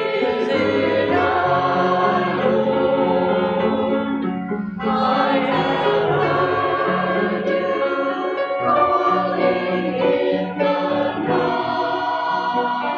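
Mixed church choir singing a hymn in parts with accompaniment, with a brief break between phrases about five seconds in.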